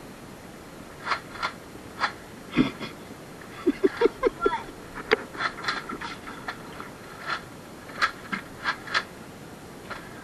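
A scattering of short, sharp clicks and knocks, about a dozen, with a brief laugh-like burst of voice about four seconds in.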